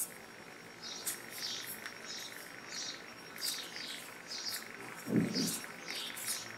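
Faint, short, high-pitched bird chirps repeating irregularly, one to three a second, with a brief low sound about five seconds in.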